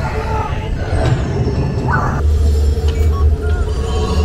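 Test Track ride vehicle rumbling along its track through a dark show building, under the ride's onboard soundtrack of music and voice. The low rumble grows louder about halfway through.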